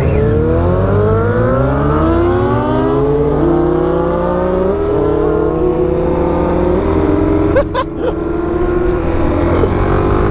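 Suzuki DRZ400SM single-cylinder engine under hard acceleration, climbing in pitch through the gears with upshifts over the first few seconds, then holding a steady high rev. There is a short break in the sound about eight seconds in, with wind rushing over the helmet camera throughout.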